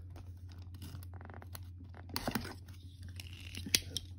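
Hands working at small plastic packaging to get a card out: faint scratching and small clicks, with a brief rapid rasp about a second in and a couple of sharper ticks later, over a steady low hum.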